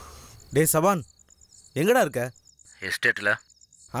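Crickets chirping in a steady pulsing trill, heard between three short spoken phrases from a man's voice.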